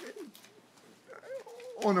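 A pause in a man's talk, filled with a faint, low, wavering murmur, a hummed hesitation sound about one and a half seconds in, before speech resumes at the very end.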